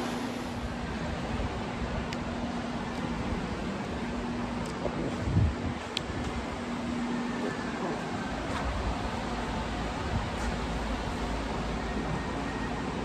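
Steady whoosh of barn ventilation fans with a low steady hum, and one brief low thump about five seconds in.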